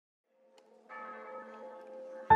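Faint bell tones fading in from silence: a held, ringing chord of several pitches that swells about a second in, the start of a bell-toned music intro.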